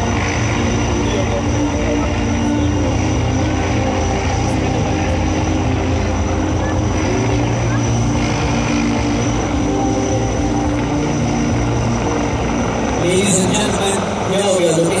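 Army helicopter hovering low, its rotor and engine running with a steady, even drone.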